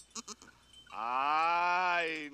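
A goat bleating once: one long call of about a second, starting about a second in, its pitch rising and then falling.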